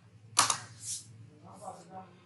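A single sharp computer-keyboard keystroke about half a second in, as a new numbered line is started in the document, followed by a short breathy hiss and a faint murmur.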